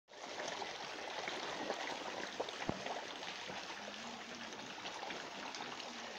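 Koi thrashing together at the pond surface: a continuous wet splashing and sloshing of water, full of small ticks and pops, with a single sharper knock a little under three seconds in.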